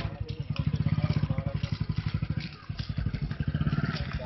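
An engine idling with a fast, even pulse of about ten beats a second.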